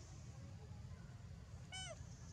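A baby macaque gives one short, high-pitched call near the end that dips slightly in pitch.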